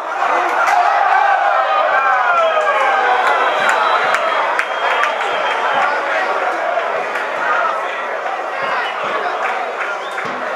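Several voices shouting and calling over one another, loud and overlapping, with short sharp knocks scattered through.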